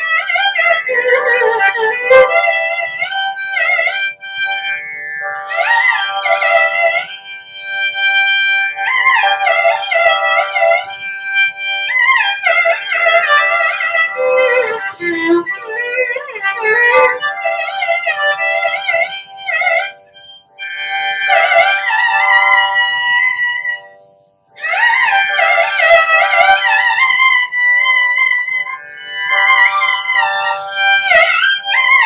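Carnatic violin played solo in long, ornamented phrases whose notes slide and bend between pitches, without percussion. It breaks off briefly about twenty seconds in and again about twenty-four seconds in.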